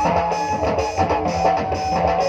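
Live Nagpuri stage-band music with no singing: an electronic keyboard plays a plucked, guitar-like melody over a steady beat.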